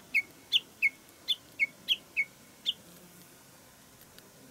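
A small songbird singing a run of short, clear notes that alternate high and low, about three a second, stopping about three seconds in.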